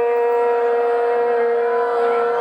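A blown conch shell (shankh) sounding one long, steady note at a single pitch.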